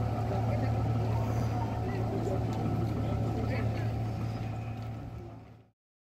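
Outboard motor of a small open boat running steadily, with people's voices faintly under it; the sound fades out near the end and stops.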